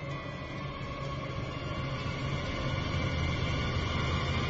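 Horror film soundtrack drone: a low rumble under steady, sustained high tones, slowly growing louder.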